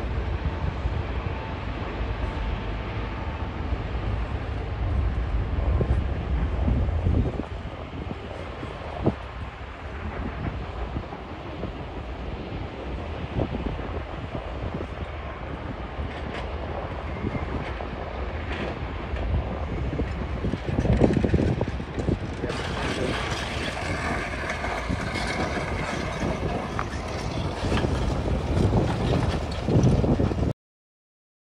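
Stone-crushing plant heard from a distance: a steady low machinery rumble mixed with wind on the microphone. It swells louder a couple of times and turns brighter and hissier in the last third.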